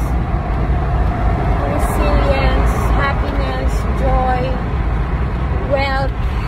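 Steady low rumble of a car driving, heard from inside the cabin, with a woman's voice coming and going over it.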